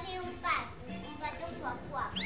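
Young children's voices, two short high exclamations, about half a second in and near the end, over background music with held notes.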